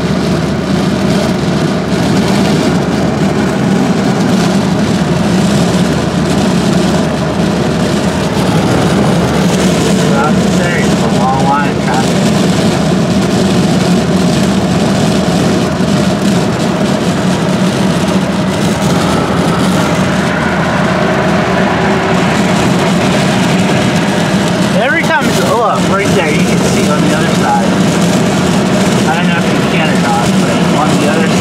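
Steady road and engine noise inside a car's cabin while cruising on a highway, with a constant low hum. Brief snatches of a voice come through about ten seconds in and again near the end.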